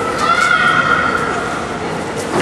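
A person's long, high-pitched shout, held for about a second and wavering slightly in pitch, then trailing off, over the general noise of the hall.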